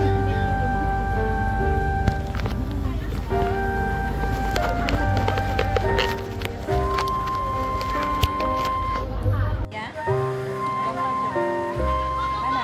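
Music: a melody of held notes stepping from one pitch to the next over a steady bass line, with the bass cutting out for a moment near ten seconds in.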